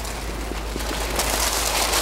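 Rustling and crinkling of a patient's exam gown and drape against the examination table as she lies back, a steady crackly noise that builds slightly.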